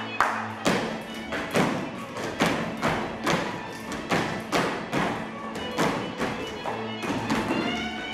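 Folk dance music with the dancers' shoes stamping on the floor in time, about two sharp stamps a second.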